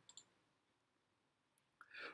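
Near silence, broken just after the start by two quick, faint computer mouse clicks.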